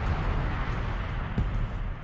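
Anime episode audio playing: a steady rushing, rumbling noise with no speech, the sound-effect bed of an action scene.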